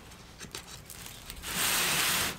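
A clay pot handled on its woven ring stand: a few faint clicks, then about a second and a half in a short, loud rustling scrape.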